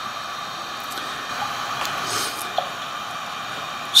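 QSI Magnum sound system in an O-scale Santa Fe 2-10-4 steam locomotive model, playing the standing locomotive's steady steam hiss through its small speaker, with a short louder hiss about two seconds in.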